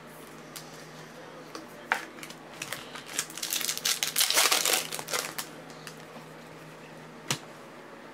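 Hands opening a foil trading-card pack and handling the cards: a few sharp clicks, then a couple of seconds of crinkling and rustling of the wrapper around the middle, and a single click near the end.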